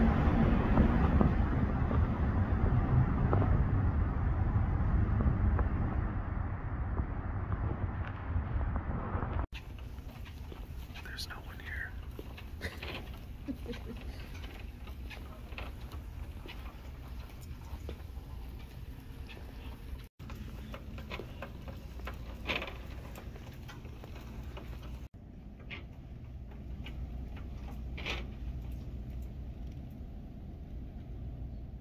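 Loud, even low rumbling noise for about the first nine seconds. It cuts off suddenly into quiet shop-floor ambience with faint indistinct voices, scattered light clicks and rattles, and a few brief high blips.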